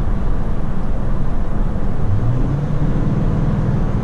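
Toyota Tundra pickup's engine and road noise heard from inside the cab, a steady low rumble. About two seconds in the engine note rises and holds higher as the truck accelerates with tow/haul mode switched on.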